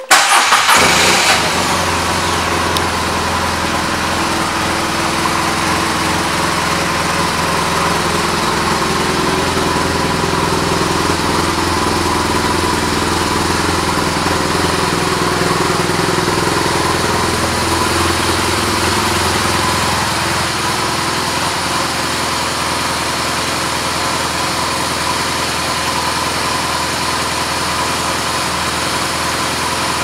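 A 2013 BMW R1200GS Adventure's boxer-twin engine starts and catches at once. It is louder for the first second or so, then settles into a steady idle.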